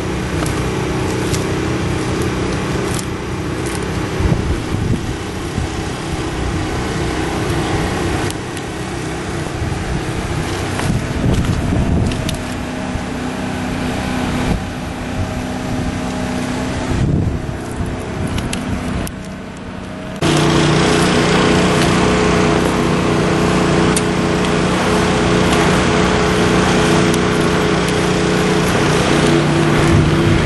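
An engine running steadily, with a droning hum; about two-thirds of the way through its pitch shifts and it gets suddenly louder.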